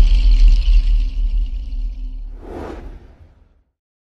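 Logo-sting sound design: a deep bass rumble under a high shimmering ring, both fading away, with a brief whoosh about two and a half seconds in before the sound dies out.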